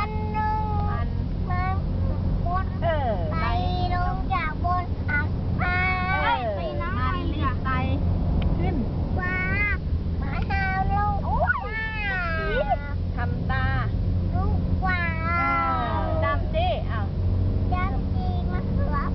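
A toddler singing in a high voice, in phrases with long gliding notes, over the steady low rumble of the car's engine and road noise.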